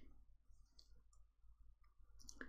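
Near silence: faint room tone with a low hum and a couple of faint clicks.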